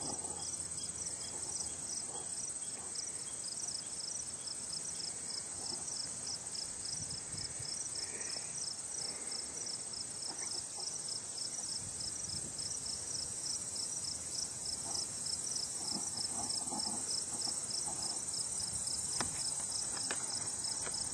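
Chirping insects: a steady high-pitched trill, with a second, pulsed chirp repeating evenly about three times a second.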